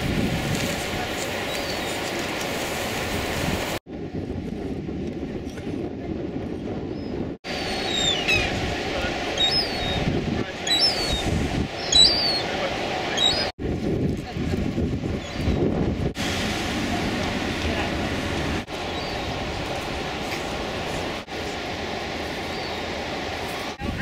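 Outdoor ambience of wind on the microphone and the murmur of a gathered crowd's voices, cut off abruptly at several edits.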